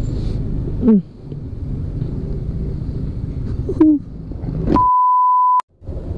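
Low rumble of a scooter riding off, with two brief vocal sounds. Near the end, a steady beep of one pitch lasts just under a second while every other sound drops out: an edited-in censor bleep.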